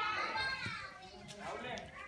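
A small child's high-pitched voice, talking or calling out with sliding pitch through the first second and again briefly near the end.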